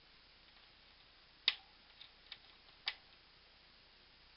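Parrot bathing in a small bowl of water: a few short, sharp splashes, the two loudest about a second and a half apart.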